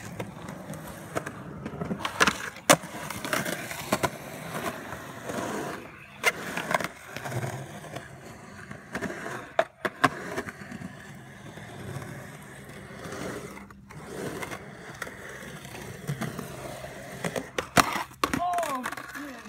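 Skateboard wheels rolling over rough concrete with a steady grinding rumble, broken by a handful of sharp clacks as the board hits the ground.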